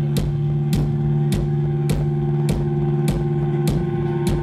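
Rock band playing live: a held low guitar and bass chord under steady drum strikes about every 0.6 seconds, with no vocals.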